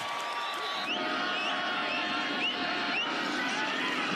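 Stadium crowd cheering, with a few short rising whoops cutting above the roar.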